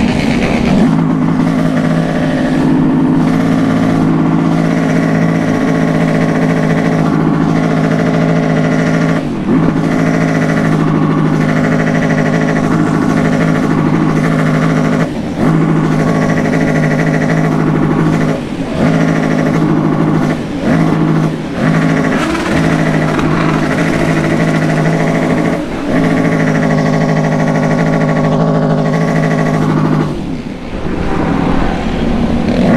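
Motorcycle engine pulling hard at high, steady revs while riding. There are brief drops in revs several times, where the throttle is closed or a gear is changed.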